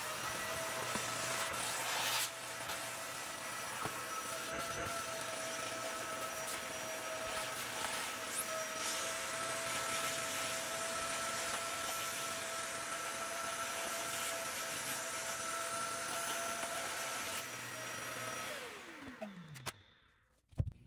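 Handheld vacuum cleaner with a brush attachment running steadily as it is worked over a fabric bench cushion to pick up dog hair: a steady motor whine over rushing air. Near the end it is switched off and the motor winds down, its pitch falling away.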